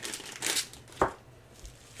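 Clear plastic zip bag crinkling as it is handled and opened, loudest about half a second in, with a single sharp tap about a second in.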